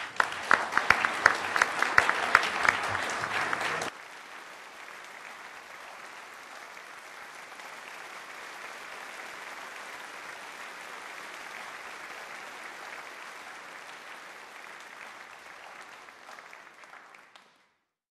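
Audience applauding. For the first four seconds sharp, loud claps sit close to the microphone; then the level drops suddenly and the applause goes on softer and even until it fades out near the end.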